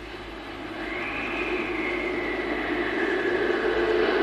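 Sustained drone from the cartoon's soundtrack, swelling steadily louder, with a low tone and a high tone held under a noisy hiss; the high tone slides slowly down near the end.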